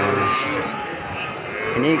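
Cattle mooing, a sustained low call in the first part, with a man's voice starting near the end.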